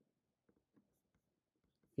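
Near silence: faint room tone with a few very faint scattered ticks.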